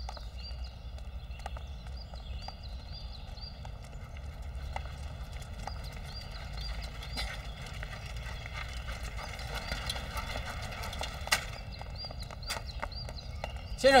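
A hand-pulled rickshaw coming up a paved path: irregular clip-clop steps over a low steady rumble, with small high chirps now and then.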